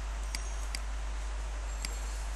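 Three short clicks of a computer mouse, two close together in the first second and one near the end, over a steady low hum.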